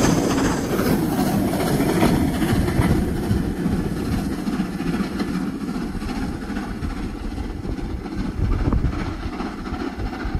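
Steam-hauled passenger train passing beneath and then pulling away, its rumble fading steadily as it recedes.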